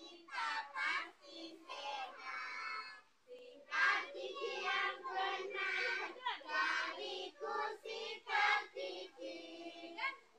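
A group of young children singing together, in phrases with a short pause about three seconds in.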